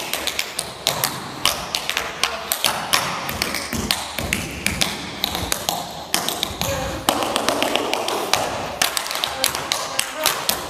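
Tap shoes striking a wooden stage floor in a rapid, uneven run of sharp taps, with a few heavier thuds around the middle.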